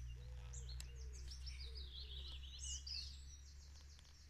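Small birds chirping and singing, with a busier run of high chirps a little past the middle, over a low steady rumble.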